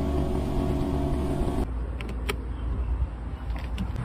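A steady low hum with several held tones that cuts off abruptly about one and a half seconds in. After that, a duller low rumble goes on under a few sharp clicks from the power trunk lid of a Mercedes-Benz S-Class.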